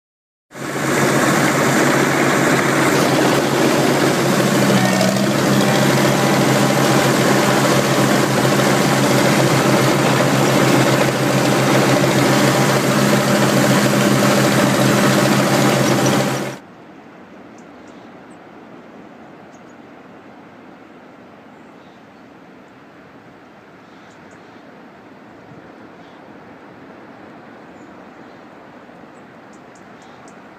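An engine running loud and steady at a constant speed, with a fixed low hum. It starts abruptly half a second in and cuts off suddenly about two-thirds of the way through. A much quieter outdoor background with faint scattered ticks follows.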